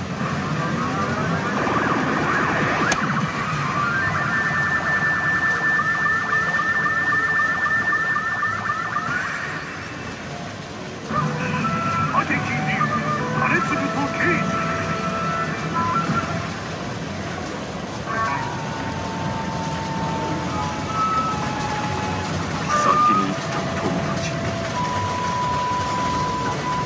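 Pachinko machine (P義風堂々!! 兼続と慶次2) playing its electronic effects and music during a bonus sequence: a repeated rising, warbling effect over a held tone, then a string of short beeps at changing pitches.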